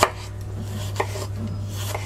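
A chef's knife slicing through a cucumber and striking a wooden cutting board: two sharp chops about a second apart, over a steady low hum.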